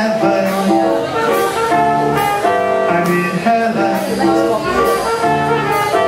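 Live jazz band playing a swing tune, with upright bass and drums under the melody.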